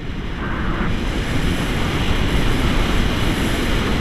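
Wind buffeting the microphone of a selfie-stick camera in paraglider flight, a steady rushing noise that gets louder about a second in.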